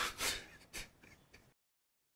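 A man crying: three or four short, gasping, sniffling sobbing breaths, the first the loudest, then the sound cuts off to dead silence about one and a half seconds in.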